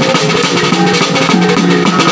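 Maguindanaon kulintang gong ensemble playing. A quick melody on a row of small tuned bossed gongs runs over repeated strikes on a large hanging bossed gong, with drum beats and a steady ringing gong tone underneath.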